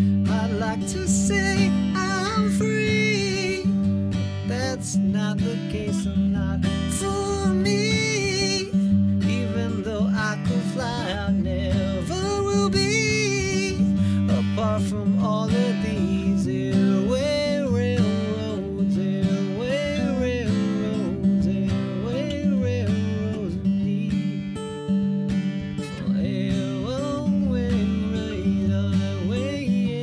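Acoustic guitar strummed steadily while a man sings over it.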